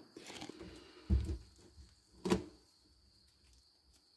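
Handling sounds of a flexible plastic mixing container as a last bit of gummy, mostly cured epoxy is picked out of it with a thumbnail: a dull thump about a second in and a sharp click a little after two seconds.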